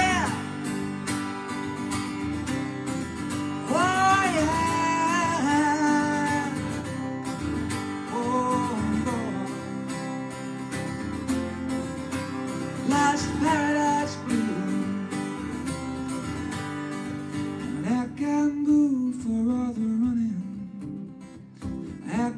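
Steel-string acoustic guitar strummed in a steady rhythm through an instrumental stretch of a live song, with a pitched melody line coming in over it in short phrases every few seconds. A held sung note ends right at the start.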